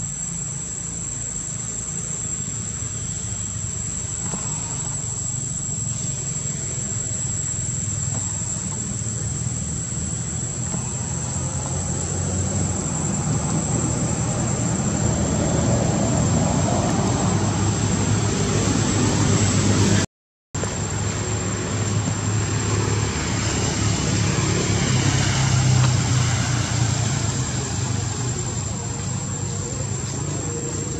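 Outdoor ambience: a steady high-pitched insect drone over a low, wavering rumble. The sound cuts out completely for a moment about two-thirds of the way through.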